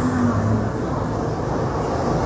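Steady low background rumble and hum, with a faint held tone in the first half second.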